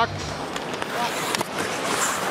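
Ice hockey arena game sound: a steady crowd hubbub with skates scraping the ice, and a couple of sharp clicks about two thirds of a second and just under a second and a half in.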